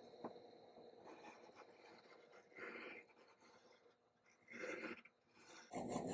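Faint pencil scratching on brown paper as a hand is traced around, in two short strokes about two and a half and four and a half seconds in, with a little rustling near the end.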